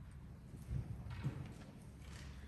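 A few soft thumps about half a second apart, from a man stepping up to the pulpit and taking hold of its microphone.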